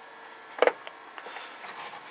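Plextor PX-880SA DVD drive's tray mechanism giving one sharp click about half a second in, then a few faint ticks over a low steady hum, as the drive struggles to eject its tray after the button press.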